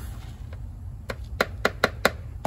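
A metal spoon knocking against a plastic mixing cup of dampened black powder meal, four quick knocks in the second half.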